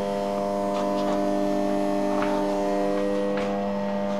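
Steady, unwavering mains electrical hum from the powered-up Maho MH-C 700 milling machine's electrics, with a few faint ticks.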